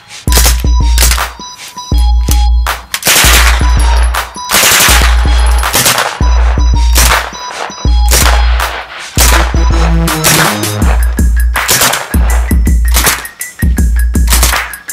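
Drum-and-bass style electronic music with a heavy, repeating bass beat, mixed with bursts of suppressed full-auto fire from 9mm submachine guns.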